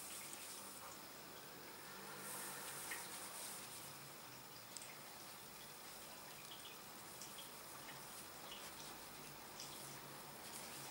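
Faint handling sounds of hand-sewing: fabric rustling and a few small ticks as a needle and thread are worked through a stuffed fabric doll head, over a steady low hiss.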